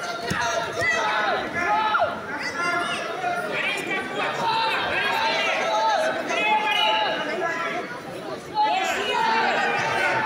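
Many overlapping voices from people around a wrestling mat, calling out and chattering throughout, in a large indoor hall.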